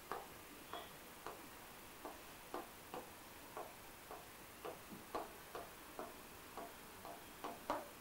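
Pen tip tapping and clicking on an interactive display screen while writing by hand. The light, irregular clicks come about two a second.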